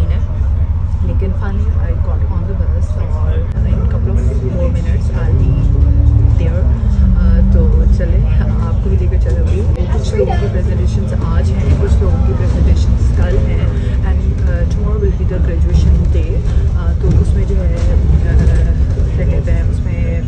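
Bus interior while driving: a steady low engine and road rumble, with the engine note climbing and then dropping back about six to seven seconds in.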